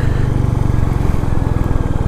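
Royal Enfield Meteor 350's single-cylinder engine running steadily at cruising speed, its exhaust beat an even low pulsing, over a hiss of wind and road noise.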